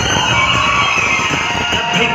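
Loud DJ dance music playing over a sound system, with a steady beat.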